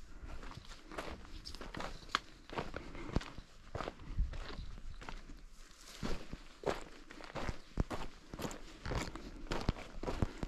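A hiker's footsteps on a trail: an irregular run of crunching steps and sharp clicks, a few each second.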